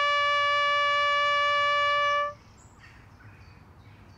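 A lone brass horn, bugle-call style, holding one long high note that stops about two seconds in. Faint bird chirps follow.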